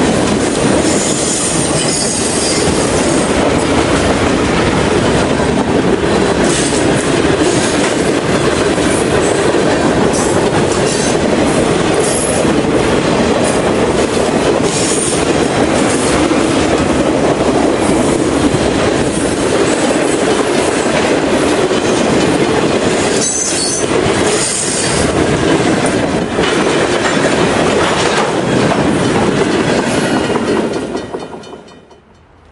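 Freight cars of a long train rolling past close by: a steady loud rumble of steel wheels on rail, clicking rhythmically over the rail joints, with brief high-pitched wheel squeals now and then.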